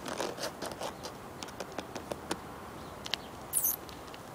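Light scratching and scraping: a string of small irregular clicks and scrapes, with a brief hiss about three and a half seconds in.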